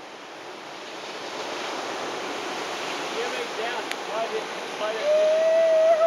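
Surf washing on a beach, a steady rush that swells over the first couple of seconds, with faint voices under it. About five seconds in, a person gives a long drawn-out call that falls in pitch at the end.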